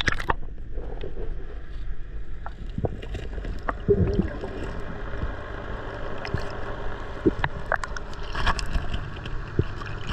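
Muffled underwater noise picked up by a submerged camera: a steady low rumble with scattered sharp clicks, a short wobbling sound about four seconds in, and a brief hiss of noise near the end.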